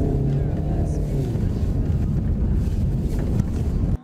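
Audi car's engine and tyres rumbling in the cabin as it is driven over a gravel off-road course, with wind buffeting the microphone.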